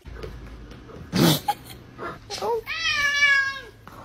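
A domestic cat meowing: a short call, then one long meow that drops in pitch at the end. A short, loud, sharp sound comes about a second in.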